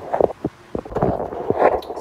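A few light knocks and clicks with a short rustle about one and a half seconds in: handling noise from kitchen utensils or equipment being moved.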